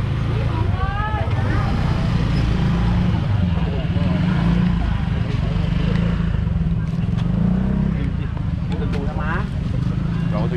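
Motor scooter engines running steadily as a low rumble, with voices talking briefly about a second in and again near the end.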